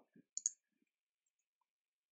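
Near silence broken by a few faint, short clicks in the first half second, the clearest a sharp high tick about half a second in.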